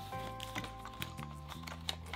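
Quiet background music with held notes over a slow-changing bass line. A few faint clicks come from a plastic water pen being taken out of a hidden compartment in a board book, about a second in and near the end.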